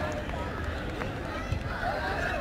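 Indistinct voices of spectators and children calling around an outdoor sports field, with no clear words, over a low background rumble.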